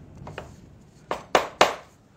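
Three sharp knocks of wood on wood as a glued tenon is driven home into its mortise, after a few faint clicks of the pieces being fitted.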